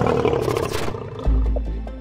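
A lion roaring over dramatic background music. The roar is loudest in the first second.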